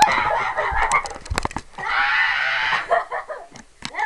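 A child making silly wordless vocal noises close to the microphone, ending in a drawn-out cry of about a second, with a few sharp knocks just before it.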